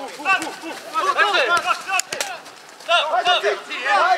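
Footballers shouting short calls to each other across the pitch during play, in bursts of several voices. A few sharp knocks of the ball being kicked are heard in between.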